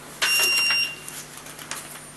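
A sudden rustling noise lasting about half a second, with a short high steady beep sounding through it.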